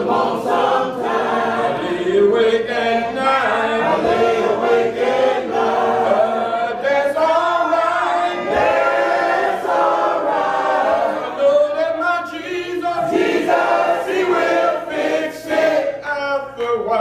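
Church congregation singing a hymn a cappella, many voices together without instruments.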